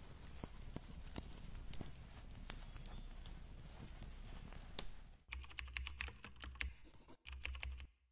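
Quiet, irregular clicks and taps over a low hum, like typing on a keyboard. The sound gets heavier about five seconds in, drops out for a moment near the end, then stops.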